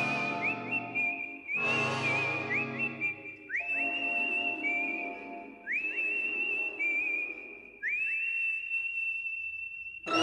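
A whistled melody over a soft instrumental backing: high, held notes that each swoop up into pitch, about five phrases, with the backing dropping away in the second half.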